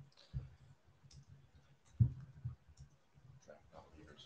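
Scattered clicks and soft knocks from people at laptops around a meeting table, the sharpest about two seconds in, with faint murmured voices.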